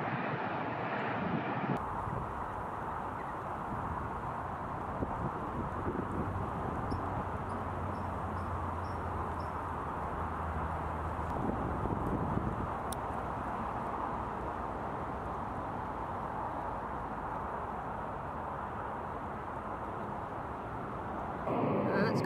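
Steady wind noise on the microphone over outdoor ambience, with a faint run of short high chirps about a third of the way in and a single click near the middle.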